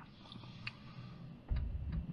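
Faint clicks and lip smacks from a man's mouth as he tastes a drink, with a low rumble coming in about one and a half seconds in.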